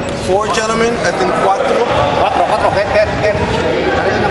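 Several people talking at once in a gym: overlapping chatter from basketball players and spectators, with no one voice standing out.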